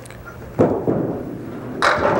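A candlepin ball lands on the wooden lane with a sudden thud about half a second in and rolls with a steady rumble. Near the end comes a sharp clatter as it takes out a few pins, missing the head pin to the right.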